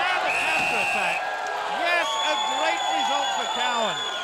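Crowd cheering and shouting, with a man roaring in celebration. Two steady high-pitched tones cut through: a short one about half a second in and a longer one through the second half.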